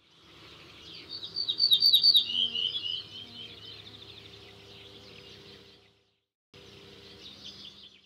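Songbird singing: a quick run of high repeated chirping notes, loudest about one to two seconds in, then softer calls over faint outdoor ambience. The sound fades out about six seconds in and returns faintly after a short gap.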